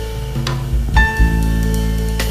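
Live jazz band playing: piano chords struck about half a second and a second in, ringing over electric bass and drum kit.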